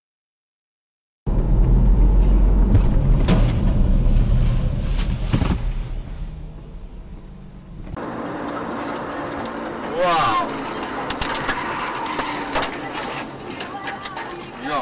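Car dashcam audio: after about a second of silence, a loud low rumble with a few sharp knocks that dies away, then quieter vehicle and road noise with voices.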